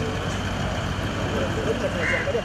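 Steady outdoor street noise of vehicles running, with faint, indistinct voices mixed in.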